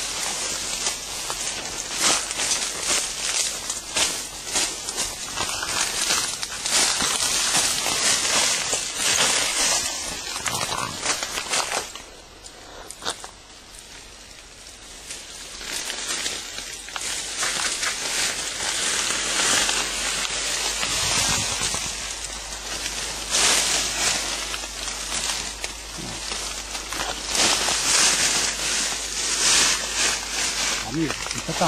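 Leaves, twigs and brush rustling and snapping as people push on foot through dense forest undergrowth. The sound is loud and uneven, and eases off for a few seconds about twelve seconds in.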